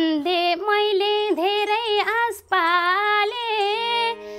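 A woman singing a Nepali dohori folk song verse in a high voice that bends and wavers between notes, with a short breath break about two and a half seconds in. A steady held instrumental note comes in underneath near the end.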